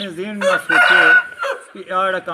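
An Aseel rooster crowing once, a crow of about a second that is the loudest sound here, with a man talking just before and after.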